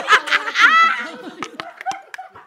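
Several people laughing loudly and breaking up. One high laugh falls in pitch about half a second in.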